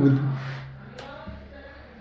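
A person's voice briefly at the start, falling in pitch, then a steady low hum with a single click about a second in.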